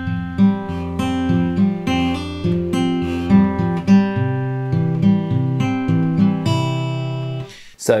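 Martin OM-21 steel-string acoustic guitar fingerpicked in a Travis pattern, alternating thumb bass under melody notes. It ends on a held chord that rings out and fades near the end. The passage demonstrates an F sus chord in place of the hard F minor barre chord.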